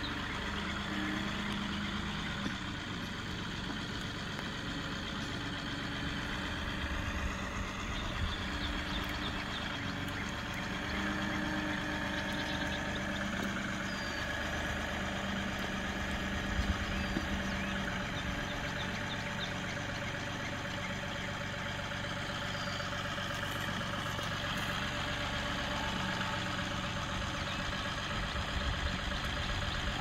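John Deere 2038R compact tractor's three-cylinder diesel engine running steadily at low speed as it climbs a hill with a loaded front bucket. A couple of brief knocks sound about halfway through.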